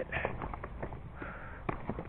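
Footsteps crunching on a gravel-and-stone hiking trail, with scattered sharp clicks of stones underfoot.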